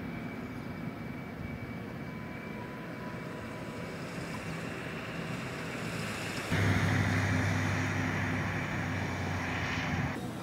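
Steady outdoor rumble of engines and machinery. About two-thirds of the way in it turns abruptly louder, with a steady low hum.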